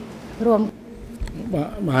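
Speech only: a woman's voice says a few words, then after a short pause a man's voice begins speaking near the end.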